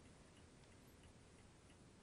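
Near silence with a clock ticking faintly and regularly, roughly one and a half ticks a second.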